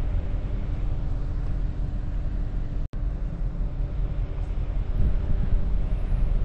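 Steady low rumble with a faint even hum from the research icebreaker Polarstern under way through sea ice, heard on the open deck. The sound cuts out for an instant about halfway through.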